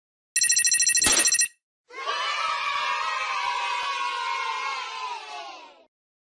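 Intro sound effects: a bright trilling ring lasting about a second, then, after a short gap, a crowd of voices cheering for about four seconds and fading out near the end.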